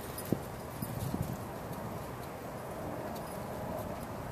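Quiet outdoor background hiss with a few soft, scattered clicks and knocks in the first second or so.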